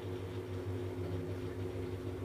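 A steady low electrical or motor hum, a few constant tones with no distinct knocks or clicks.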